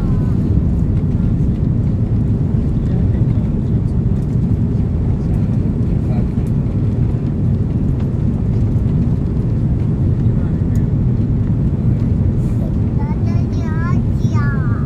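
Steady low cabin noise of an Airbus A330-300 on final approach, from its Rolls-Royce Trent 772B engines and the airflow over the wing with its flaps extended.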